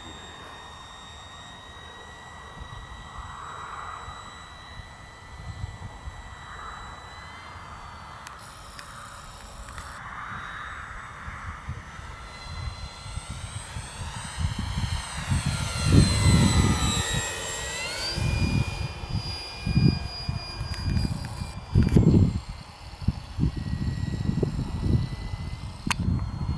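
Radio-controlled model T-28's motor and propeller whining steadily in flight. A little past halfway, during a close pass, the pitch sweeps down and then jumps back up. Through the second half, gusts of wind rumble loudly on the microphone.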